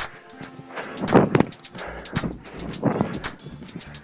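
Background music with sharp percussive hits, the heaviest about a second in and about three seconds in.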